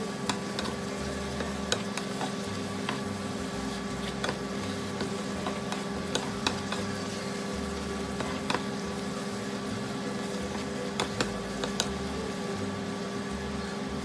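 Spinach sizzling in a frying pan as it is stirred and turned with a wooden spatula, with sharp clicks now and then over a steady low hum.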